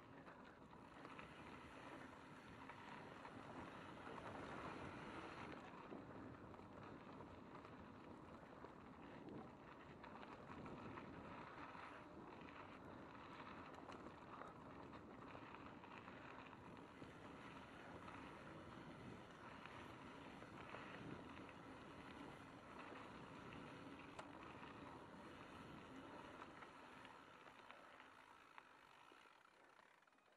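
Mountain bike rolling fast down a dirt and gravel trail: steady, faint tyre rumble and wind on the microphone, dying down near the end as the bike slows.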